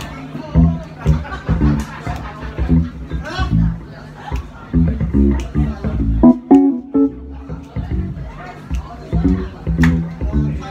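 Live band playing an instrumental intro: plucked bass guitar notes in a steady rhythm, with piano chords and drums.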